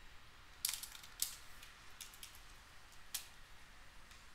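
Computer keyboard keystrokes: a handful of sharp, scattered key clicks.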